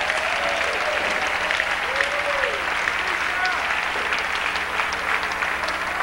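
Congregation applauding steadily, a dense patter of many hands clapping, with a few voices calling out over it.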